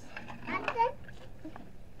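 A young child's voice: one short utterance with a rising and falling pitch about half a second in, over a faint steady low hum.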